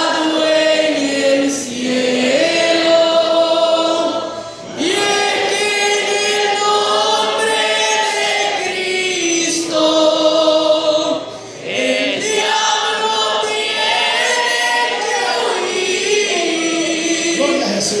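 A church youth choir of boys and young men singing a hymn together in long, held phrases, with brief breaths between phrases about four and a half and eleven and a half seconds in.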